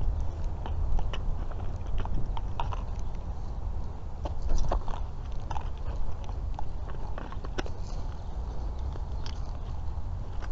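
Scattered plastic clicks and rustling from a cordless hedge trimmer and its battery pack being handled, over a steady low rumble. The trimmer's motor is not running.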